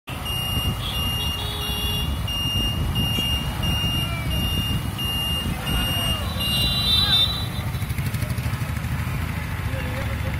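Wind and road rumble from riding a two-wheeler through town traffic, with a short electronic beep repeating about one and a half to two times a second for the first seven seconds or so.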